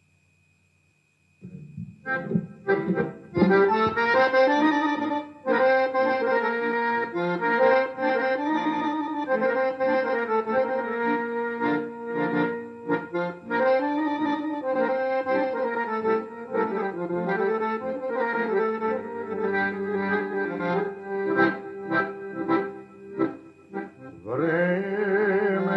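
Near silence for about a second and a half, then an accordion-led instrumental introduction to a Serbian folk song starts and carries on with fast runs of notes over sustained chords.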